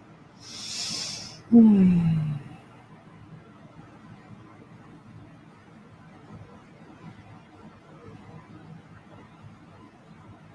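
A woman's breathy hiss, then about a second and a half in a loud voiced sigh that falls in pitch.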